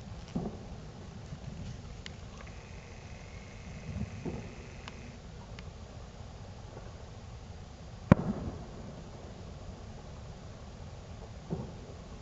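Scattered firecrackers and fireworks going off at a distance: a few soft pops, then one sharp, much louder bang about eight seconds in, over a steady low rumble.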